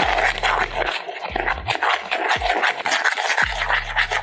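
Metal spoon stirring and scraping a dry mix of gram flour and spices around a plastic mixing bowl, in quick scratchy strokes.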